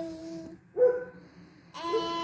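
A young girl's voice reciting a poem in a sing-song chant, with long drawn-out vowels: a held note that ends about half a second in, a short syllable, then another held note near the end.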